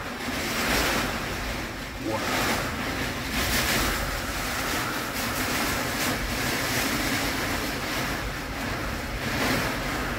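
Storm wind of about 40 miles an hour with heavy rain, a steady rushing that swells and eases with the gusts.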